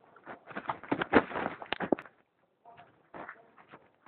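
Mountain bike passing close by on a dirt trail: a dense clatter of tyres and rattling bike parts, loudest a little past one second in and gone by about two seconds, then a few scattered knocks.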